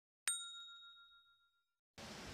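A single bright ding sound effect, struck sharply and ringing out for about a second and a half, marking another letter Q being circled on the worksheet.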